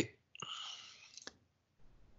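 A breathy, whisper-like hiss from the presenter lasting about a second, with a faint click near its start and another near its end.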